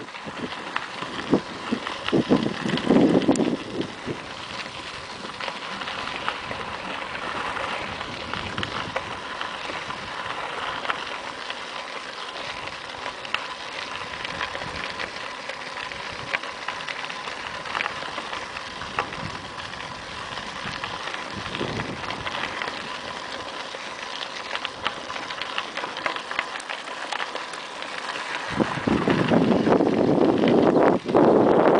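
Bicycle tyres crunching over a loose gravel trail: a steady crackling rustle full of small clicks. Wind buffets the microphone briefly about two to three seconds in and again near the end.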